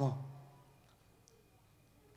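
The end of a man's word through a microphone trails off, then near silence with room tone and a faint click a little over a second in.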